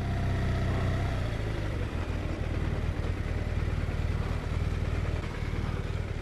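BMW R1200RT's boxer-twin engine running steadily at low revs as the motorcycle rolls slowly.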